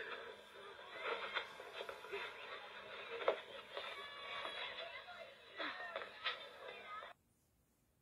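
Children's audio-play cassette playing on a small portable cassette player: faint, thin-sounding voices that break off abruptly about seven seconds in.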